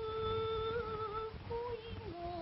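A woman's singing voice holding one long note, then moving to a new note near the end, in a Japanese kouta song on an old, crackly recording.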